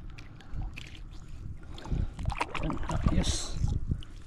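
Shallow seawater sloshing and splashing around hands and a rope stringer of fish, with irregular small knocks and a brief splash a little after three seconds.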